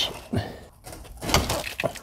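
Several irregular metallic knocks and clicks from a ratchet with an extension and a 17mm hex socket being worked on the transaxle fill plug of a 1973 VW Super Beetle.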